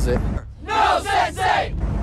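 A group of voices shouting "No, Sensei!" in unison, three loud syllables about a second long, the answer to a drill-style call.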